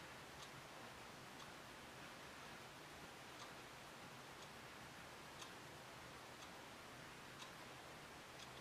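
Near silence: room tone with a faint clock ticking about once a second.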